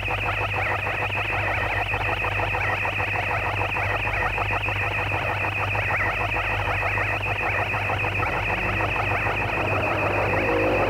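Live power-electronics noise: a steady, dense wall of distorted, crackling electronic noise over a low hum, with a thin high whine above it.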